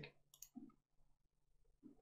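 Near silence with a couple of faint computer mouse clicks.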